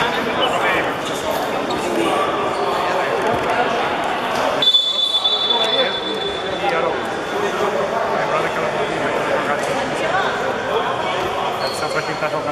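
Indistinct chatter of many voices echoing in a large gymnasium, with basketballs bouncing on the court. About five seconds in, a steady high beep sounds for about a second.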